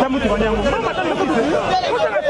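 Several voices talking over one another: lively chatter among a group of people.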